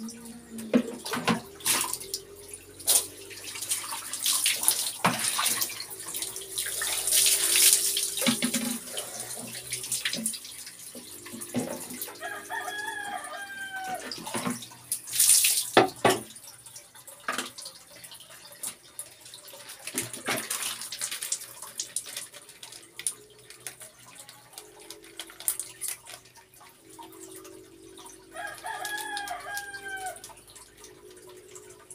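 Water poured from a plastic dipper splashing down onto a person and a concrete floor in several loud surges, with dripping in between. A rooster crows twice in the background, about halfway through and near the end.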